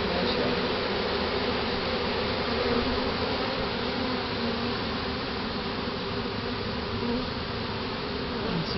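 A large swarm of honey bees buzzing at close range: a steady, dense hum of many wings, with no pauses, as the swarm is hived.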